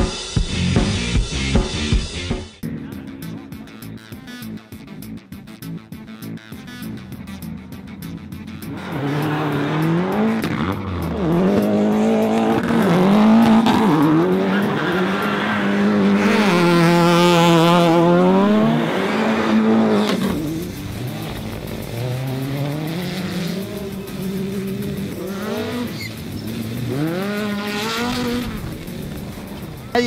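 Rally car engines revving hard as cars pass, the pitch climbing and dropping back again and again with the gear changes, loudest in the middle. A short burst of music plays at the very start.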